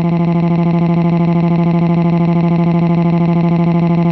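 The old Linda text-to-speech voice holds one long, flat-pitched synthetic 'waaah' with a buzzing flutter. It is the robotic drone a speech synthesizer makes when typed-out crying is fed to it.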